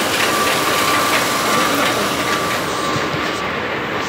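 Latex glove production line machinery running: a steady, loud industrial din with a constant whine and faint rattling ticks.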